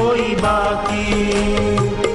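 Devotional Hindu bhajan music: a sung line trails off at the start, then held instrumental notes carry on over a steady hand-drum beat.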